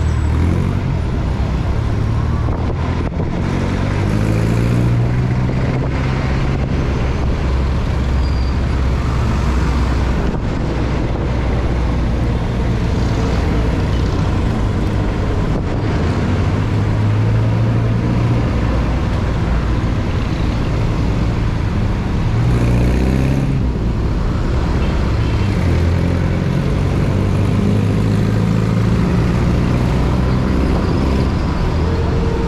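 Motor scooter engine running steadily, its pitch rising and falling with the throttle in stop-and-go riding. The engines of jeepneys and other traffic around it are mixed in.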